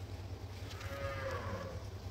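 A single drawn-out moo of cattle, about a second long and falling slightly in pitch, over a steady low hum.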